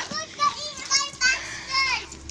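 Children's voices: a young girl talking in short, unclear bursts, with other children around.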